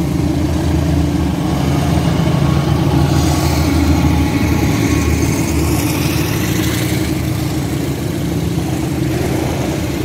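Diesel-electric locomotive hauling a passenger train past close by: its engine running loudest about four seconds in as it passes, then the steady rumble and hiss of the coaches' wheels running over the rails.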